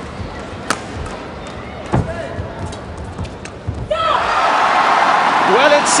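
Badminton rally: a few sharp racket strikes on the shuttlecock, the clearest about a second and two seconds in. About four seconds in, a crowd breaks into loud cheering and shouting as the point is won.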